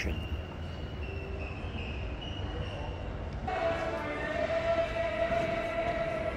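Escalator running with a low steady rumble. About three and a half seconds in, a steady sustained tone with overtones starts suddenly and holds to the end.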